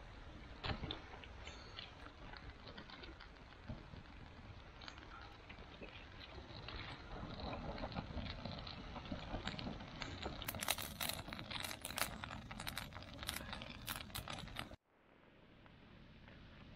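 A small kindling fire crackling and popping as it catches, with dry twigs rustling as they are laid on it. The crackles grow denser and sharper near the end, then break off suddenly.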